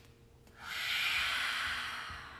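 A long, open-mouthed exhale in a yogic breathing exercise: a breathy hiss that begins about half a second in and slowly fades.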